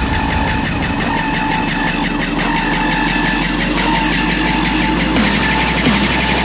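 Hard dance electronic music from a raw hardstyle and uptempo DJ mix, loud and continuous, with a held high synth note over a dense beat. It grows brighter about five seconds in.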